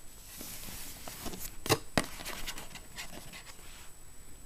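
Hands handling a cardboard phone box with the phone in its tray: rustling and light knocks, with two sharp clicks close together about two seconds in.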